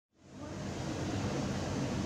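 Steady hiss of background room noise, rising from silence over the first half second and then holding level.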